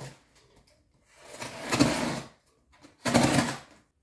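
A cardboard parcel being torn open, most likely packing tape ripped off the box: two long tearing sounds, the first about a second in and the second near the end.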